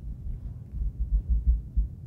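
Soft, irregular low thumps picked up close to the microphone, several in quick succession in the second half, over a faint steady room hum.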